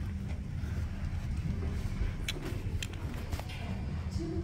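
Room tone of a hall: a steady low rumble with a few faint clicks between about two and three and a half seconds in.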